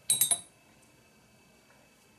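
A paintbrush clinking against a glass water jar: about four quick, light glass clinks within half a second.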